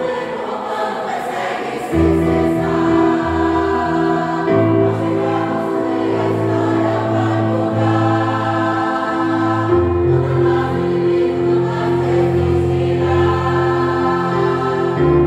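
A church congregation singing a Christian song together in chorus, with held chords that change every few seconds.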